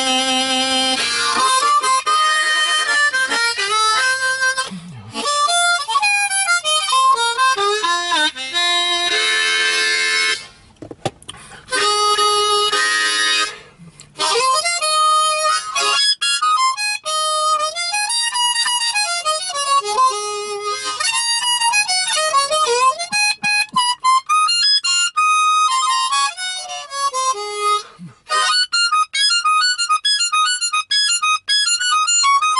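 Diatonic blues harmonica played solo in free warm-up runs: strings of short and held notes moving between high and low registers, many bent up and down in pitch, broken by a few short pauses.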